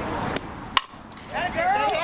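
A softball bat strikes a pitched ball: one sharp, loud crack about three quarters of a second in. Spectators' voices rise shortly after it as the batter puts the ball in play.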